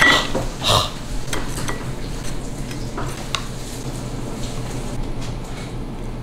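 Clatter of a plate and utensils being handled while plating food. A few sharp clinks come in the first second and a couple more about three seconds in, over a steady low hum.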